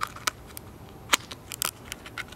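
Thin aluminium wall of a beer can crackling and clicking irregularly as a brass Beer Spike pries at the edge of a punched hole to widen it.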